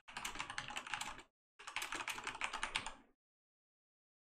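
Typing on a computer keyboard: two quick runs of key clicks with a short pause between them.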